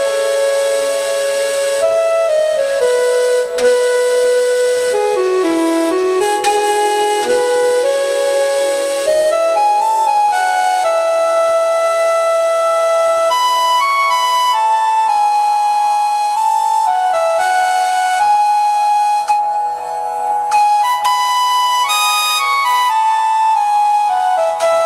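Indian flute playing a slow, relaxing melody, with long held notes and smooth slides between pitches.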